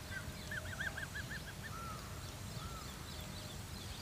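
A bird calling faintly: a quick run of about seven repeated rising-and-falling notes about half a second in, then two single drawn notes, over quiet rural background.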